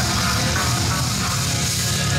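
Death metal band playing live: electric guitars with drums.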